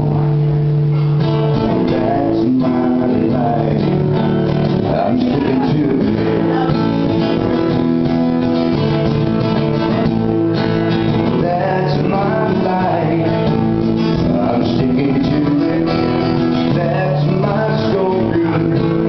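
Acoustic guitar strummed in a steady rhythm, with a man singing over it.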